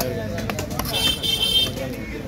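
Heavy cleaver chopping through fish on a wooden block, two strokes about half a second apart near the start. About a second in comes a high horn-like toot lasting under a second, the loudest sound, over a murmur of voices.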